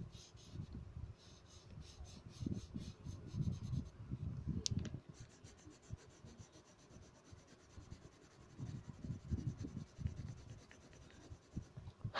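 Coloured pencil shading on paper: soft scratchy rubbing strokes in irregular bursts with short pauses between them.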